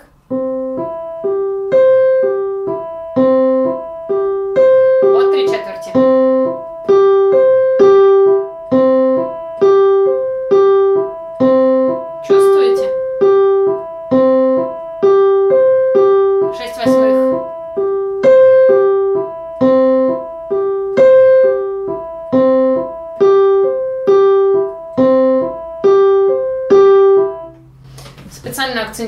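Electronic keyboard with a piano sound playing a six-note figure of even eighth notes on three pitches at a steady tempo of a little over two notes a second, repeated about ten times. The figure is accented on every other note, grouping the six eighths in twos as a bar of 3/4 rather than in threes as 6/8.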